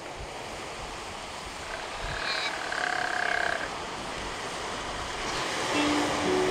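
Steady sea and wind noise from open water, with a faint drawn-out animal call lasting about two seconds around the middle.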